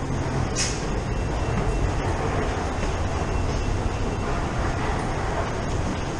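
Steady low rumble of London Underground station ambience in a tiled stair and passage, with one brief hiss about half a second in.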